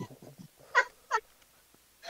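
Two brief, high-pitched vocal squeaks from a person's voice, a moment apart, about a second in.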